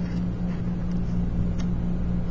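Steady low hum over even background noise, with a few faint soft ticks from fingers pressing the glued paper sides of the prism together.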